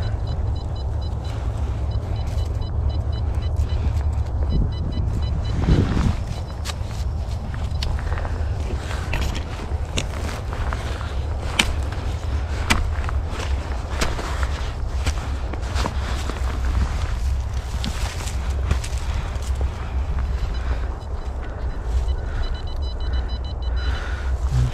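Metal detector sweeping over forest floor, giving faint high repeating beeps near the start and again near the end, a squeal the detectorist likens to a wire target. Under it there is a steady low rumble and the crackle of twigs and leaf litter.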